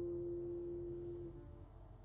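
Cedar-top classical guitar built by Nikos Efthymiou letting a plucked note ring on and fade away, dying out a little past halfway through.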